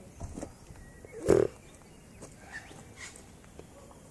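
Male koala giving one short, loud grunt about a second in, with a fainter sound just before it.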